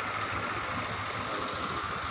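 A steady low mechanical hum with an even background hiss, like an engine or motor running.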